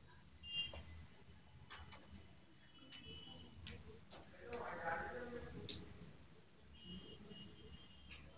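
Faint scattered clicks and light clinks of items being handled on a steel instrument trolley, with a brief murmur of a voice about halfway through.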